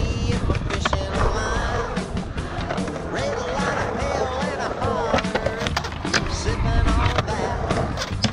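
Skateboard's hard wheels rolling and carving across a concrete bowl, a steady rumble, with music playing over it.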